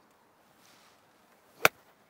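Golf iron striking a ball off a synthetic hitting mat: a single sharp, crisp impact about one and a half seconds in.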